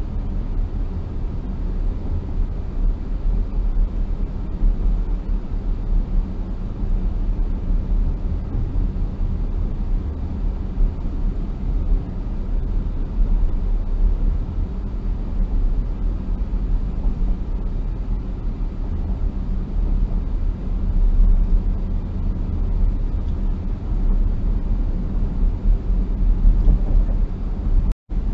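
Steady low rumble of a car driving at about 50 km/h, heard inside the cabin: road and tyre noise with the engine underneath, no sudden events.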